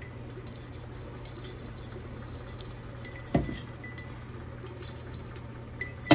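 Glassware and an enamel double-boiler pot being handled, with faint clinks and one solid knock a little past halfway, over a steady low hum.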